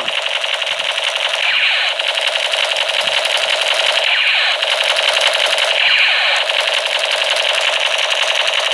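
Electronic sound effect of a battery-powered toy sniper rifle: a rapid, unbroken machine-gun rattle played through the toy's small speaker while the trigger is held.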